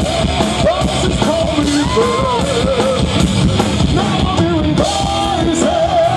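A live rock band plays loudly while a male singer belts long, wavering sung notes over the band.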